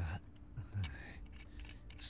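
Slurping sips of tea and a swallow, short crisp mouth-and-liquid sounds with a soft throat sound.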